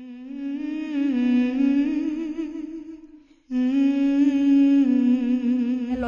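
A voice humming long held notes that step gently up and back down, with a short break about three seconds in before it resumes.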